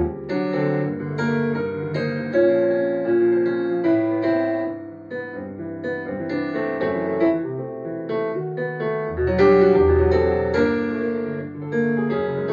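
Solo jazz piano played on a Yamaha S90 ES keyboard's piano voice: chords under a moving melody, with deep bass notes at the start and again about nine seconds in, and a softer passage around the middle.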